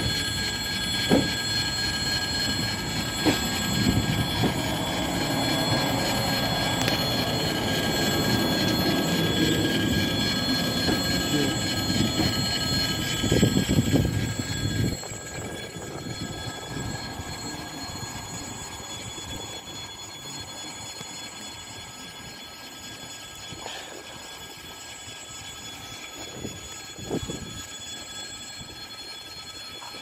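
ED4M electric multiple unit departing a platform: its carriages roll past with a steady rumble and a few sharp clicks. The sound drops suddenly about halfway through as the rear cab goes by, then fades as the train pulls away.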